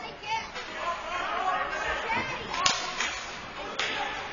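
Two sharp cracks of hockey stick and puck play on the ice, the first and loudest about two and a half seconds in, the second shortly before the end, over players' voices in the rink.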